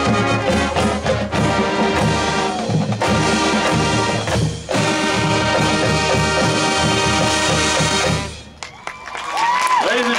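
Full marching band, brass over drums and pit percussion, playing the closing bars of its show, with a brief break about four and a half seconds in, and cutting off about eight and a half seconds in. Just before the end the crowd starts cheering and whistling.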